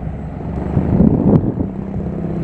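Boat engine running steadily under way, a low droning rumble, with one short click about one and a half seconds in.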